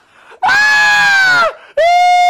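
Two loud, high-pitched screams, each held on one pitch. The first lasts about a second and drops off at its end; the second starts near the end.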